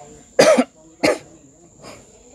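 A person coughing: a loud cough about half a second in, a shorter one just after a second, and a faint third near the end.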